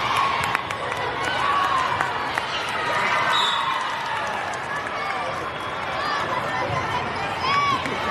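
Crowd chatter and players' calls in a large indoor volleyball hall, with scattered sharp ball thuds. There is a short high squeak about three and a half seconds in, and a single rising-and-falling call near the end.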